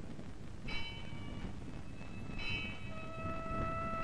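Temple bell struck twice, about a second and a half apart, each stroke ringing and fading away; a steady held musical tone comes in under the second ring near the end.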